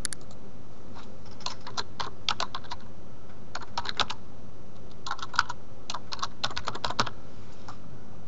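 Typing on a computer keyboard in short runs of keystrokes, with a gap around three seconds in; a single click at the very start.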